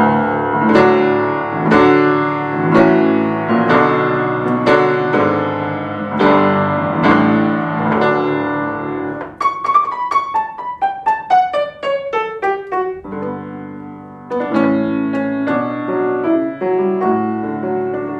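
Baldwin spinet piano being played: sustained chords, then a descending run of single notes about halfway through, then chords again. It has a rich tone with a good bass for a small piano.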